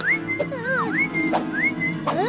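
Whistled tune over background music: a few upward glides, each ending on a short held high note, with falling slides between them.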